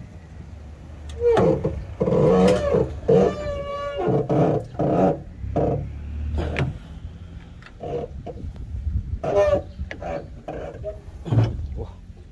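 A man grunting and straining as he heaves up the heavy hood of a New Holland TS90 tractor, with knocks and clatter from the hood being handled.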